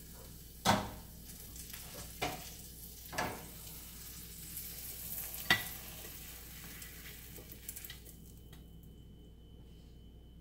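Egg, patty pan squash and spinach sizzling in a ceramic nonstick skillet, with a few sharp knocks of the pan and its lid; the sizzle stops about eight seconds in.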